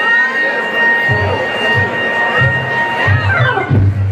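Live funk band at the top of a number: one long held high note over low bass notes that start about a second in. Near the end the held note bends down and falls away.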